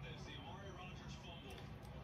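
Quiet room tone: a faint steady low hum with no distinct sound standing out.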